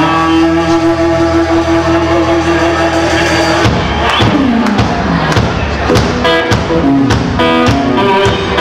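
Live rhythm-and-blues band playing an instrumental passage with electric guitar to the fore: a chord held steady for the first half, then about halfway in the drums come in with a falling pitch slide and the band carries on in rhythm.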